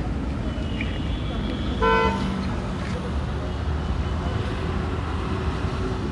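A vehicle horn gives one short toot about two seconds in, over a steady low rumble.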